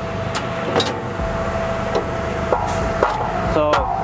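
A tool drawer in a truck service body being unlatched and pulled open: a few sharp clicks and knocks from the latch and drawer, with a short metallic rattle near the end as it slides out on its runners. A steady low hum runs underneath.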